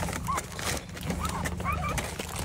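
Several short, high chirping animal calls, a few in quick succession late on, over the steady low hum of an idling van engine.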